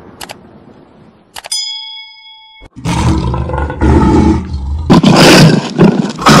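Subscribe-button sound effects: a mouse click, then a second click and a bell ding that rings for about a second and cuts off sharply. Then a loud lion-roar sound effect starts about three seconds in and grows louder near the end.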